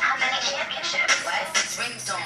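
Hip hop track with a woman rapping over a steady beat, played back from a music video.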